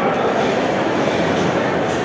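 Steady din of many people talking at once in a large, echoing dining hall, with no single voice standing out.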